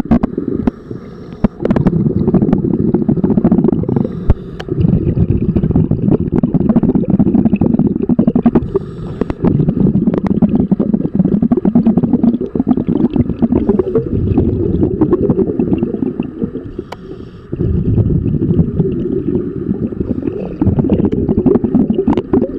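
Underwater noise heard through a camera housing: a scuba diver's exhaled regulator bubbles rumbling and crackling in long bursts, with a quieter stretch about two-thirds of the way through.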